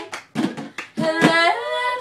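Two female voices singing a cappella over a hand-made beat of claps and plastic cups knocked on cardboard tissue boxes. A quick run of sharp claps and knocks comes in the first second, then a held sung note that slides up in pitch.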